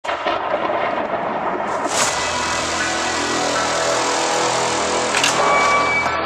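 Sound-effects soundtrack of an animated intro: a dense rushing noise with two whooshing swells, one about two seconds in and one near the end, while sustained musical tones come in underneath.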